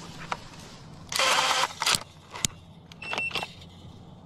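A battery-powered automatic rebar tying tool firing once: a loud whirr of about half a second as its motor feeds and twists tie wire around crossed rebar, followed by a few sharp clicks. A shorter whirr with a thin whine comes near the end.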